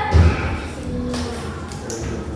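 A single dull, low thump about a quarter second in, over faint background voices and room noise.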